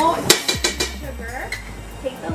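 A metal spoon clinking and scraping against a metal measuring cup as coconut oil is scooped into a stovetop popcorn popper pot: one sharp clink about a quarter second in, then a few lighter taps.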